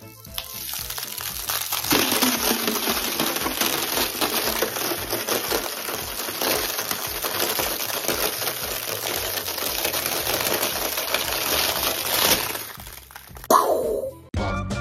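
Dense, continuous crackling and sizzling, like frying, made of many small cracks and pops with a few louder spikes. It fades near the end and is cut by a single sharp burst.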